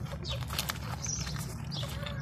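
Several pet rabbits chewing and nibbling soft orange sweets close to the microphone, a run of quick small clicks of jaws and teeth on food.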